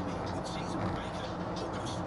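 Steady road and engine noise heard inside a moving car's cabin, with a radio voice talking faintly underneath.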